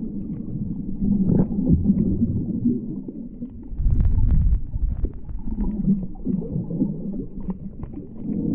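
Underwater sound picked up by a GoPro in its housing while snorkeling over a shallow reef: a muffled low rumble of moving water that swells and fades, loudest about four seconds in, with scattered faint clicks.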